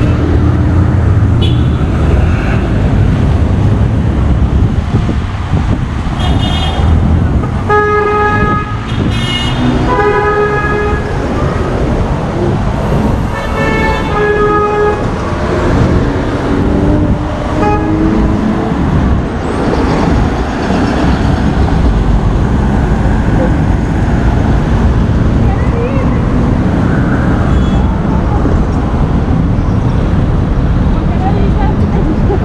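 Busy street traffic with a steady rumble of passing cars and trucks, broken by several short car horn toots between about six and fifteen seconds in.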